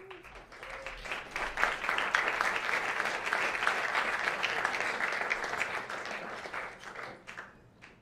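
Audience applauding, swelling over the first two seconds and dying away near the end.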